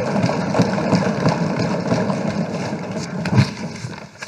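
A hall full of legislators thumping their desks and clapping in a dense, loud rattle that dies down near the end.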